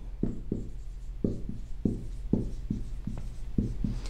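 Dry-erase marker writing on a whiteboard: a dozen or so short, irregular strokes and taps as letters are drawn.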